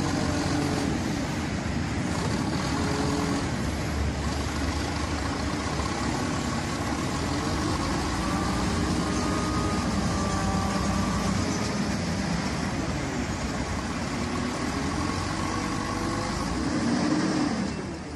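A vehicle engine running steadily amid background noise, its pitch drifting slowly up and down.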